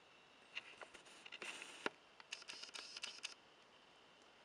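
Faint handling noise from a printed circuit board being moved on a bench mat: light clicks and short scratchy rustles, with one sharper click near the middle.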